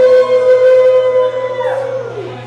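Male rock vocalist holding one long, loud note at the close of the song, the pitch sliding down just at the end.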